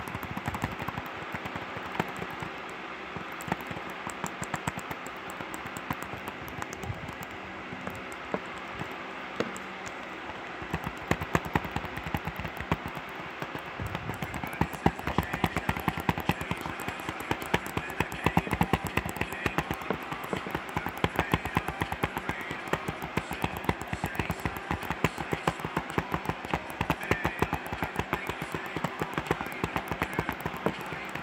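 Fingernails tapping and scratching on a plastic DVD case: rapid small clicks, sparse at first and much busier and louder from about a third of the way in.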